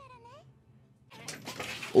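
Faint high-pitched anime character voice for the first half second, then a rush of noise that builds toward the end.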